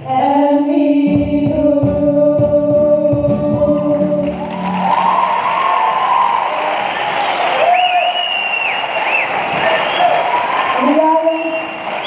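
A small group of voices holds the song's final chord over acoustic guitar and cajón strokes, ending about four seconds in. Then the audience applauds, with a few shouted cheers.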